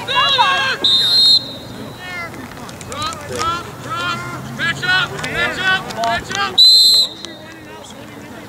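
Lacrosse referee's whistle, two short blasts about five and a half seconds apart, the second the louder, over indistinct shouting voices.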